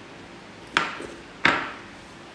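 Two sharp clinks of a glass bowl against tableware, about two-thirds of a second apart, each with a brief ring.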